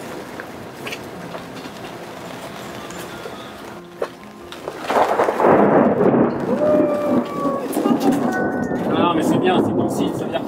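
A thunderstorm moving off: steady storm noise, then about five seconds in a sudden loud roll of thunder that carries on to the end. A voice comes in near the end.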